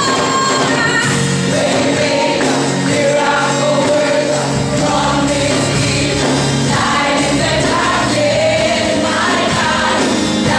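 A choir singing a gospel worship song live over musical accompaniment, with sung lines moving over held low notes.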